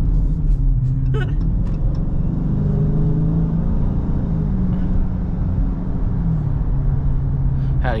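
Dodge Charger Scat Pack Widebody's 6.4-litre HEMI V8 running at low city speed, heard inside the cabin. The engine note rises a little about two seconds in, then eases back down.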